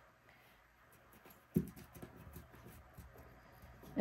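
Faint hand-handling of faux leather and a metal zipper being pressed down onto double-sided tape: a soft knock about one and a half seconds in, then light scattered rustles and ticks.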